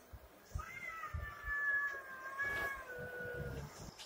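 A cat meowing in one long, drawn-out whine of about three seconds that falls slightly in pitch.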